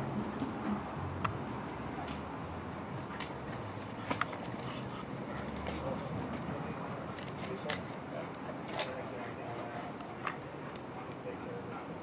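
A police K9 dog on a leash making small sounds, with scattered sharp clicks and low voices in the background.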